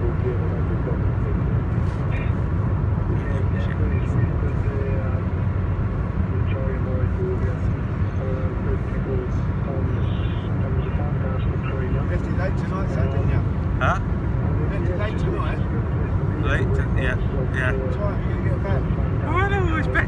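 Steady low road and engine rumble inside a moving car's cabin, with faint talk-radio voices underneath.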